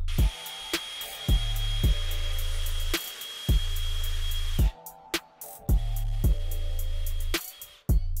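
Cordless drill running steadily with a high whine as it bores through cedar, for about four and a half seconds, then again briefly for about a second and a half, over background music with a drum beat.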